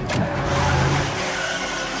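Car engine revving as the accelerator is floored, starting with a sudden burst of noise and settling into a steady run.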